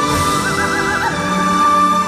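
A soprano sings a high, wordless line over orchestral accompaniment with bowed strings. A fast, wavering trill starts about half a second in, and a long high note is held under and after it.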